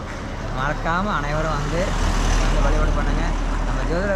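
A road vehicle passing close by: a low engine rumble and road noise swell to a peak about halfway through, then ease off.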